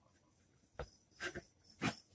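Ballpoint pen scratching on paper in a few short strokes, about a second in and again near the end, while a square-root sign and a fraction are written.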